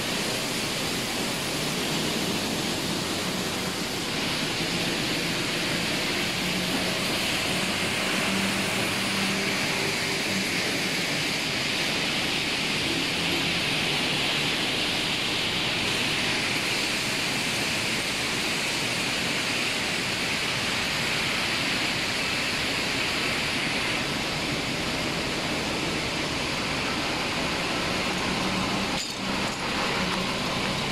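Steady, loud machinery din of an industrial processing plant: a continuous hiss-like noise with a faint low hum underneath.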